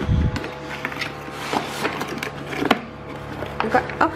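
Cardboard game box and board being handled: a low thump at the start, then scattered taps and scrapes of cardboard, with soft background music underneath.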